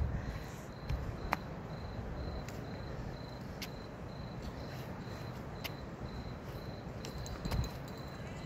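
A cricket chirping steadily, a short high note repeating about three times a second, over low background rumble. A few faint clicks and a soft thump near the end are also heard.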